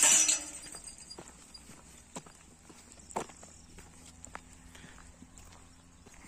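A brief loud hiss at the very start that cuts off within a moment, then faint outdoor quiet with a few scattered soft knocks and a faint low steady hum.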